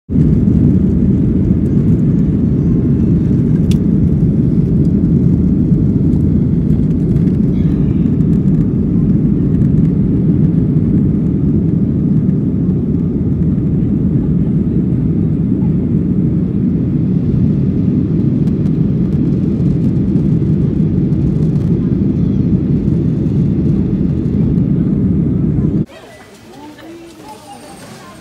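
Aircraft cabin noise in flight: a loud, steady, deep rumble of engines and airflow, with a brief click about four seconds in.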